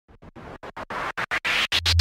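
Intro of a Haryanvi DJ hard-bass remix: a fast stuttering, chopped sound in rapid bursts, about ten a second, like DJ scratching, that grows steadily louder as a build-up. A deep bass note comes in near the end.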